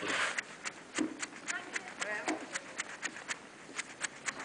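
Footsteps crunching on packed snow: short, sharp, irregular clicks several a second, with faint indistinct voices near the middle.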